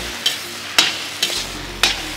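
Samosa filling of potato, peas and onion frying in a kadai while a slotted steel spatula stirs it: a steady sizzle, with two sharp clacks of the spatula against the pan about a second apart.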